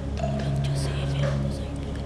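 A woman whispering close to another's ear, over a low, steady background music bed with a note repeating about once a second.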